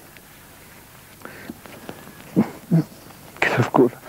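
A man's voice in short, halting fragments: about two seconds of pause, then a few brief sounds and half-words late on, as he hesitates mid-story.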